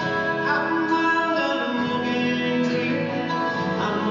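Live acoustic band music led by plucked guitar, heard in a large concert hall.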